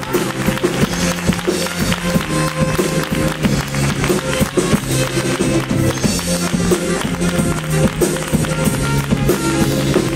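Instrumental passage of a copla song played live by a drum kit and a keyboard piano: sustained chords with frequent drum strokes and no singing.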